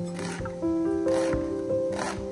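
Background music with held notes, over a santoku knife slicing through a leek onto a wooden cutting board, about two cuts.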